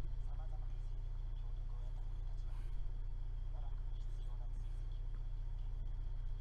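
A steady low electrical hum runs throughout, with a faint high whine above it. Faint, muffled voices come and go over it in short snatches.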